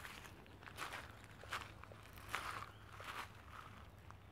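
Footsteps on loose creek-bed gravel, a step about every three-quarters of a second, faint.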